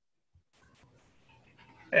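Faint room noise over an open call microphone with a few small clicks, then a man's voice begins a drawn-out "Hey" at the very end.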